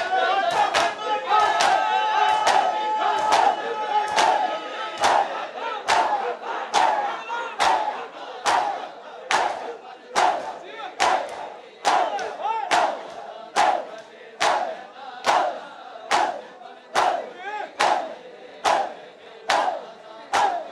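A crowd of men doing matam, striking their bare chests with open palms in unison in a steady rhythm, with a short collective shout on each loud slap. The slaps come faster at first under a held chanted line, then settle to about one a second.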